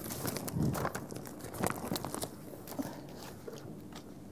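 Speech pages in a shiny plastic sleeve rustling and crinkling as they are handled and sorted, with a run of small clicks and rustles that thin out after about two and a half seconds.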